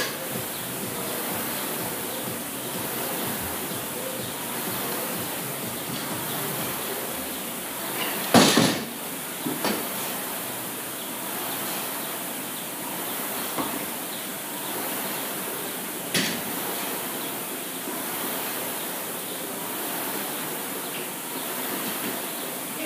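Jump rope whirring through double unders in a steady rhythm, with a few sharp knocks standing out, the loudest about eight seconds in.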